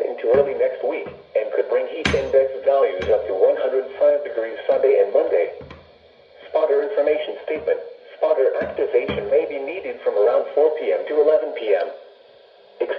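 Midland NOAA weather alert radio playing the National Weather Service's automated synthesized voice reading a hazardous weather outlook through its small speaker, thin and boxy, with brief pauses between phrases. Two short knocks about two and three seconds in.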